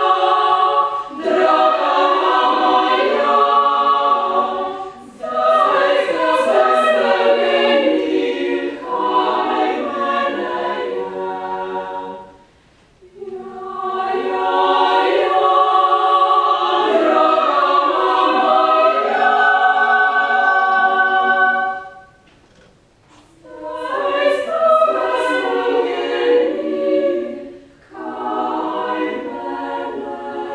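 Women's choir singing a cappella, in long phrases separated by short pauses.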